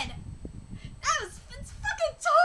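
A woman's short, high-pitched excited squeal about a second in, its pitch rising briefly and then falling steeply, with a shorter squeak near the end.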